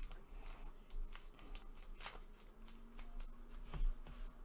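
Faint rustling and light clicks of trading cards handled in gloved hands, with a card sliding in a plastic sleeve against the stack, and a slightly louder tap near the end.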